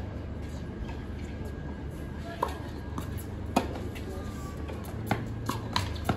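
Tennis rally on a hard court: a tennis ball being struck by rackets and bouncing, heard as a series of sharp pops about half a second to a second and a half apart, starting about two seconds in, over a low steady background.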